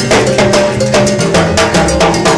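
Salsa band playing live, with a cowbell struck in quick, even strokes over the timbales, drums and a bass line.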